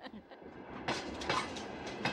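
A train running on rails: a steady noise that builds over the first second, with a few clacks of the wheels over the rail joints.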